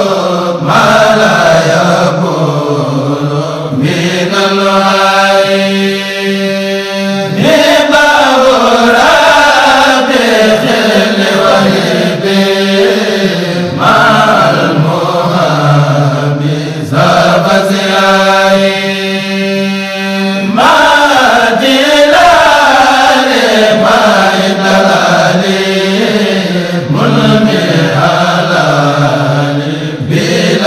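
Group of voices chanting Mouride religious poems (khassaid) in long drawn-out phrases, continuing without a break.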